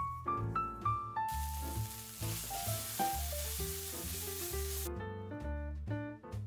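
Food sizzling in a hot pan, starting about a second in and cutting off suddenly near the end, over background piano music.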